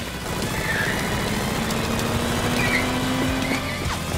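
A car's engine running with two brief tyre squeals, over background music.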